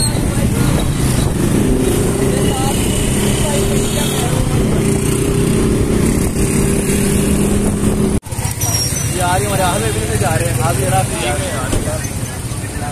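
Motorcycle engine running steadily while riding through city traffic, with a continuous hum. About eight seconds in the sound cuts off abruptly, and voices and passing roadside traffic follow.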